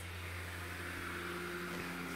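Steady hum and hiss of a Gemmy airblown inflatable's built-in blower fan running, keeping the figure inflated.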